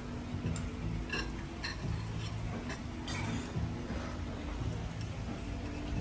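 Metal fork clinking and scraping against a plate while eating, a handful of light clinks spaced roughly half a second apart, over a low steady hum.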